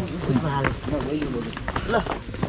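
Men's voices talking among a group on foot, with footsteps on a dirt path.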